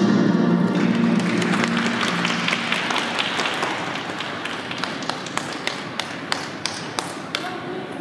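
Skating program music ends within the first second, a last low note dying away over the next two seconds. Then comes scattered hand clapping from spectators, thinning to a few single claps, about three a second, near the end.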